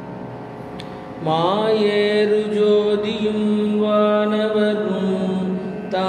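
A man singing a Tamil devotional hymn in long, held melodic notes over a steady drone. The voice comes in with a rising glide about a second in, after a moment where only the drone is heard.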